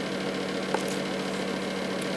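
A steady low hum over a faint hiss, with one small click about three quarters of a second in.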